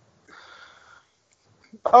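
A short, faint breathy exhale from a person, under a second long. A man's voice starts speaking near the end.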